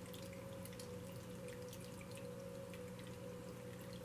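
Faint trickling and dripping of a small tabletop water fountain, with scattered tiny drips over a steady low hum.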